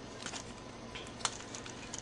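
Faint handling noise of a plastic transforming toy figure turned in the hand, with a few light, sharp clicks.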